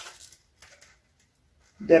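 Near silence: room tone with a few faint, brief soft sounds about half a second in. Speech resumes near the end.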